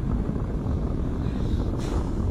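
Wind rushing over a GoPro's microphone on a parasail high above the sea: a steady, unbroken low rumble.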